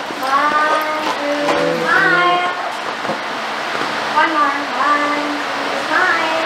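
Several high-pitched voices talking and calling out in short phrases, over a steady background hiss.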